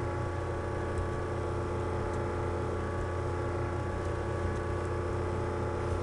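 Steady electrical hum with many even tones and a faint hiss from the computer recording setup, with a few faint clicks.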